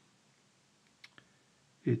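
Quiet room tone with two short, faint clicks a little after a second in, then a man's voice starts just before the end.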